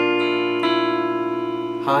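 Electric guitar with a clean tone, picking the notes of a B-flat chord one string at a time (D string at the 8th fret, G at the 7th, B at the 6th) so that they ring on together. Another note joins shortly after the start and one more a little past half a second in.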